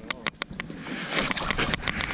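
Water splashing and sloshing at the boat's side as a striped bass is held in the water by its jaw, with a few sharp clicks at the start and louder splashing from about a second in.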